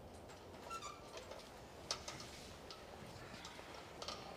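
Quiet background with faint, scattered small clicks and ticks, the sharpest about two seconds in.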